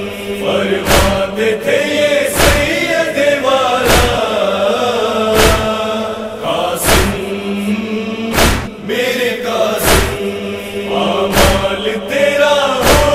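Nauha chanting by voices over an even beat of heavy thumps, about one every second and a half, the beat of matam (rhythmic chest-beating) that carries a Muharram lament.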